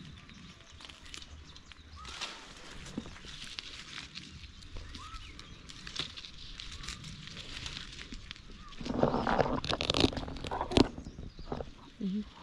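Faint, short bird chirps over quiet rural outdoor background. About nine seconds in comes a louder stretch of close rustling with a few sharp clicks, lasting about two seconds.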